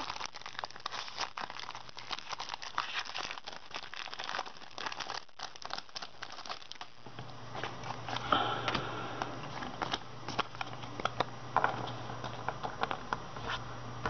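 Foil Pokémon trading card booster pack wrappers crinkling and crackling as they are handled and torn open, in a dense irregular rustle. A steady low hum comes in about halfway.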